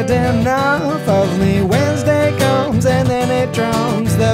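A man singing a pop-rock song, his voice sliding between notes, over a strummed acoustic guitar.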